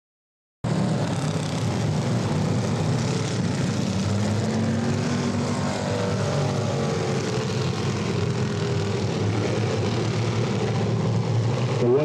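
Engines of a field of classic-bodied dirt-track stock cars running together at low speed as they roll around the oval in formation before the start. The sound is a steady, dense drone made of several overlapping engine notes that drift up and down, and it cuts in suddenly about half a second in.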